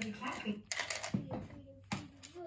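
A few light clicks and taps from a child handling a plastic toy, with a voice briefly at the start.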